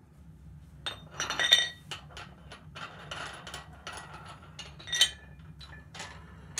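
Metal weight plates clinking and clanking against each other and an adjustable dumbbell handle as they are handled. The clanks ring, and the loudest comes about a second and a half in, with another about five seconds in.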